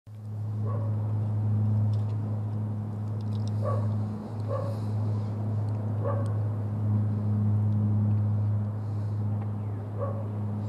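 A steady low hum with a dog barking faintly four times: once near the start and three more times in the middle.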